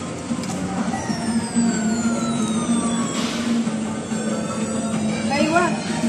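Arcade game machines' electronic music and sound effects, including a long falling tone that slides down over about two seconds, over a steady hum and background voices.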